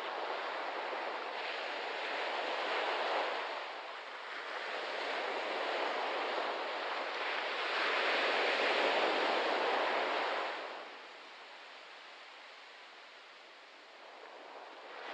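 Waves washing in on a sandy shore, the surge swelling and ebbing in slow, uneven waves of sound, then dropping to a faint wash about eleven seconds in.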